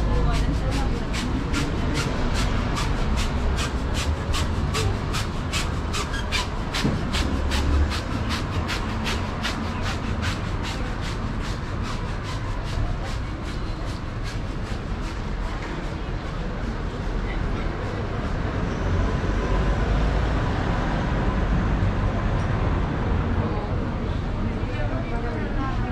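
Busy shopping-street sidewalk ambience: a fast, regular clicking, about three a second, fades out about halfway through, over passers-by talking and a steady low rumble.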